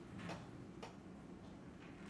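Two sharp clicks about half a second apart, with a fainter third near the end, over low room tone.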